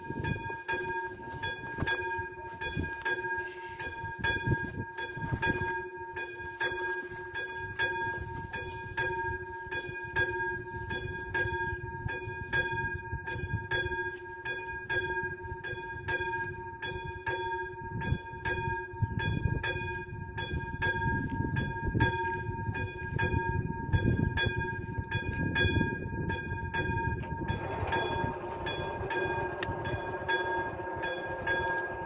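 Level-crossing warning bell ringing with rapid, evenly spaced strikes as the red warning lights flash. Near the end, the barrier arms start to lower and a motor hum joins in.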